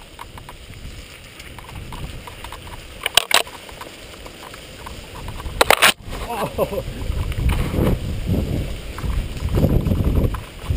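Mountain bike riding down rough dirt singletrack: tyre and frame rattle over the ground, heavier in the last few seconds. Two brief, loud scraping bursts come about three seconds in and again near six seconds, the second as branches and leaves brush against the camera.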